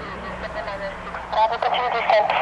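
A voice talking over an airband radio, faint at first and then loud from about a second and a half in, with the thin, narrow sound of a radio speaker. A low steady hum lies underneath.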